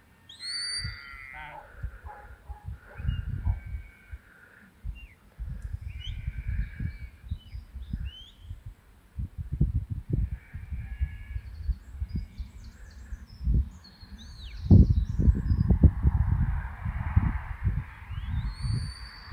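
Birds calling across the field, crow caws among them, with a pitched rising call about a second in. Wind buffets the microphone in gusts throughout, strongest near the end.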